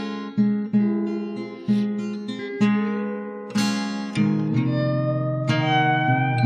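Instrumental passage of a song: acoustic guitar strumming chords in separate attacks about a second apart. From about two-thirds of the way in, the chords ring on in long held notes.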